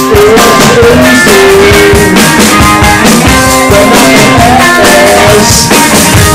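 A live rock band playing loud and close: guitar, drum kit and a lead singer, with no break in the music.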